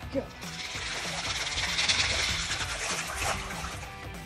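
A handful of dry dog-food kibble thrown onto lake water: a rush of pellets landing on the surface, building to a peak about two seconds in and then fading, with background music underneath.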